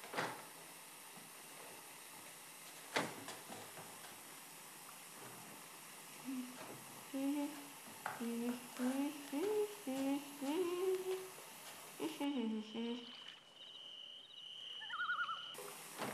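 A girl humming a wordless tune in a small tiled bathroom, over the faint steady rush of a bathtub filling with water. A door bumps shut about three seconds in, and the humming starts a few seconds later.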